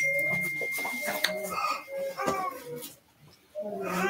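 Indistinct talking with a thin, steady high-pitched tone under it for the first three seconds or so. A short silence follows near the end, then talking resumes.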